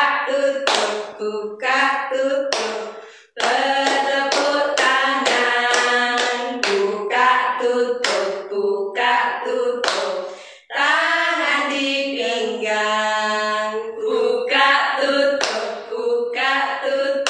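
A group of women singing a children's action song together, with hand claps at intervals.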